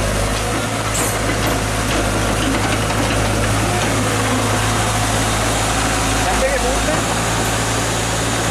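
Caterpillar tracked excavator's diesel engine running steadily as the machine drives forward.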